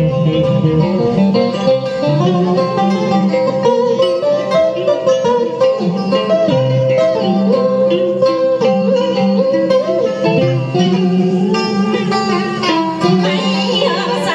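Karaoke backing track playing an instrumental interlude of a Vietnamese duet song, led by plucked strings over a steady, repeating bass line.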